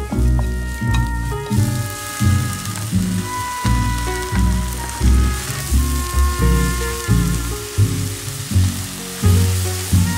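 Sliced scallions and thin-sliced lamb sizzling in oil in a pan as they are stir-fried. The sizzle grows louder about a second and a half in. Background music with a steady bass beat plays throughout.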